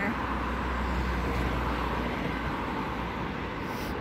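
Road traffic on a busy city avenue: a steady wash of passing cars and engines with a low rumble that eases near the end.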